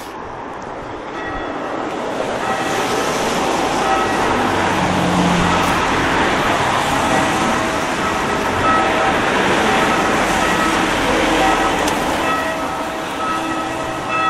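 Church bells ringing from the tower, several bell tones sounding over and over as the peal starts up about a second in and grows louder over the next couple of seconds.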